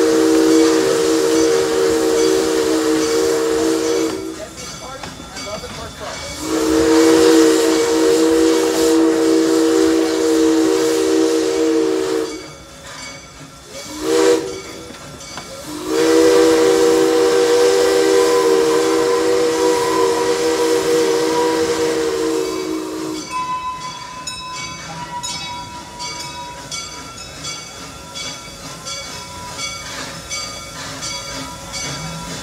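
Steam locomotive's chime whistle, a chord of several tones, blown long, long, short, long: the grade-crossing signal. After the last blast, about 23 s in, the train runs on more quietly, with steam hiss and a regular clicking beat.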